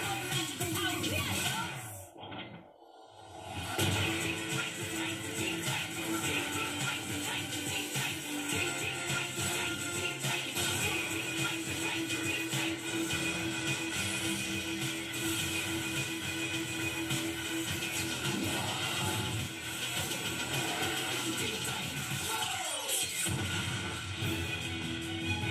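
A cartoon theme song playing from a television's speakers: sung lyrics over music, with a brief drop-out about two to three seconds in.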